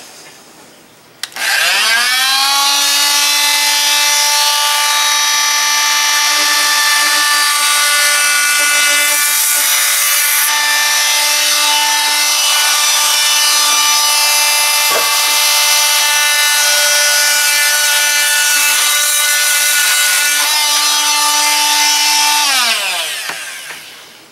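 Corded oscillating multi-tool with a wood-cutting blade spinning up about a second in and running at one steady pitch as it cuts through a wooden carpet tack strip. It winds down and stops shortly before the end.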